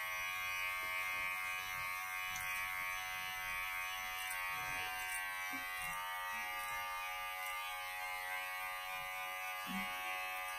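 Electric hair clippers running with a steady, even buzz as they trim the hair around a man's ear and sideburn.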